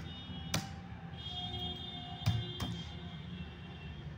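Three computer keyboard keystrokes, sharp single clicks: one about half a second in, then two close together a little after the two-second mark, over faint steady high tones.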